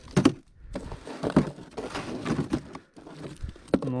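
Frozen rotan (Amur sleeper) fish clattering and knocking against each other and the hard plastic of an ice-fishing sled as a hand rummages through the pile, with several irregular sharp knocks.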